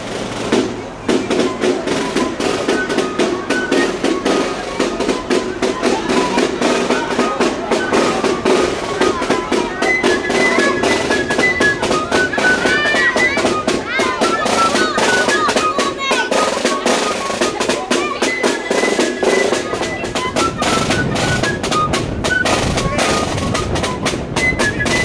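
Marching flute band playing a march: flutes carry a high tune over a side drum beating steadily, starting up right at the beginning.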